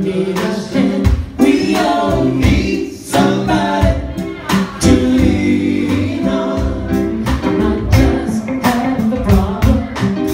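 Live band playing a song: a singer's voice over electric guitar and bass notes, with a steady beat.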